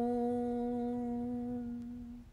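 A woman chanting Om, holding the closing hummed "mmm" with closed lips on one steady note, slowly fading away near the end.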